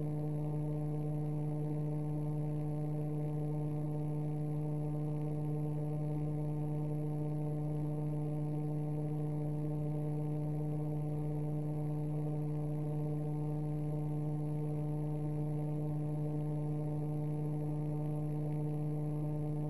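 A steady low hum with a stack of overtones, holding at one pitch and level throughout.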